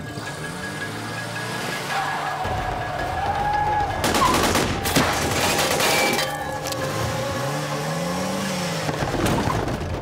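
Soundtrack of a TV crime drama playing: a music score with gliding tones, and a loud burst of noise from about four to six seconds in.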